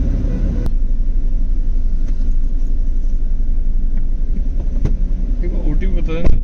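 Steady low rumble inside a small car's cabin, its engine idling while stopped. There is a sharp click about half a second in and a fainter knock near the end.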